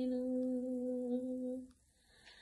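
A woman's voice holding one steady note for about a second and a half, then stopping, leaving a short pause.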